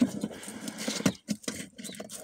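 Handling noise: a run of light, irregular clicks and scuffs, several a second, as a hand moves about the toy's plastic footwell.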